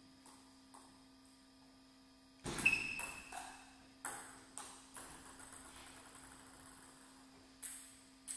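Table tennis ball struck by rackets and bouncing on the table during a rally. A few light ticks come first, then a quick run of sharp clicks from about two and a half seconds in, and a last click near the end.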